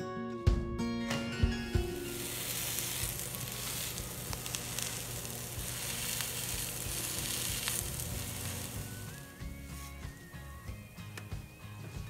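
Plantain fritters sizzling as they fry in palm oil in a skillet, an even hiss. Background music plays over the first couple of seconds.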